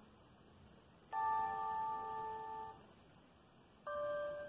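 Quiet keyboard accompaniment with no singing: a chord struck about a second in, held for under two seconds and then cut off, and another chord struck right at the end.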